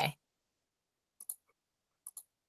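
Two quick, faint clicks in succession about a second in, from a computer mouse, with near silence around them.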